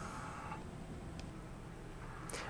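Quiet room tone: a steady low hum, with a faint steady tone that stops about half a second in and a single faint click about a second in.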